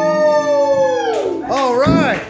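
Final held sung note of a karaoke song, sliding down in pitch and fading as the backing track ends, followed near the end by a short wavering howl.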